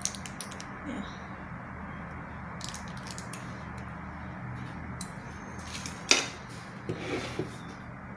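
Small clicks, ticks and crinkles of a foil-wrapped cheese wedge being peeled open with a knife, with the knife tapping on a plastic board, over a steady low hum; the sharpest tap comes about six seconds in.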